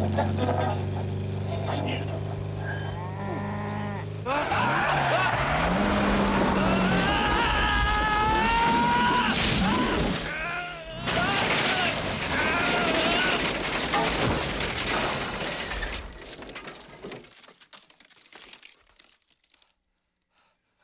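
A 1956 Porsche 356 Speedster skids with tyres squealing, then smashes through a wooden picket fence, with a burst of splintering and crashing wood that dies away in scattered bits of debris. A steady pitched tone is held for the first four seconds, before the squeal begins.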